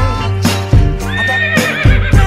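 A horse whinny with a wavering, shaking pitch comes in about a second in, laid over background music with a steady beat.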